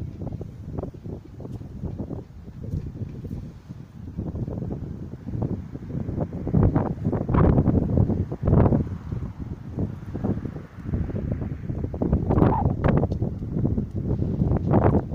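Wind buffeting a handheld camera's microphone in irregular gusts, louder in the second half, over faint street traffic.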